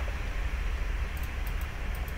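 Room tone: a steady low hum with a light hiss, and a few faint ticks a little past the middle.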